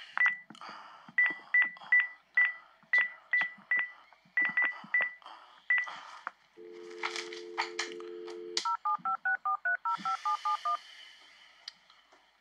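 Telephone sounds: about a dozen short clicking keypad beeps, then a steady dial tone for about two seconds. After that comes a quick run of about a dozen touch-tone (DTMF) digits being dialed, placing a call that goes to voicemail.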